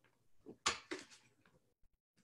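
Handling noise at a desk: a few short knocks and rustles, the loudest about two-thirds of a second in.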